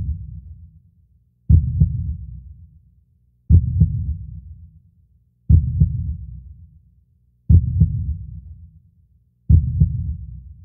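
Heartbeat sound effect: a deep, muffled double thump repeating about every two seconds, each beat dying away over a second or so.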